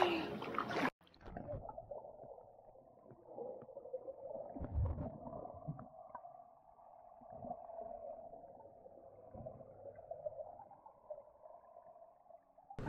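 Muffled sound of a camera microphone under water in a swimming pool: a dull, murky wash of water noise as swimmers move past, with a few low thuds. A voice cuts off abruptly under a second in as the camera goes under.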